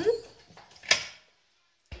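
Stainless-steel pressure-cooker lid being fitted and turned onto the pot, with one sharp metal click as it locks about a second in. A short dull thump follows near the end.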